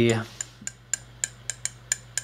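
A run of light, sharp clicks with a slight metallic ring, about eight of them, unevenly spaced at roughly four a second. The tail of a short spoken phrase is heard at the very start.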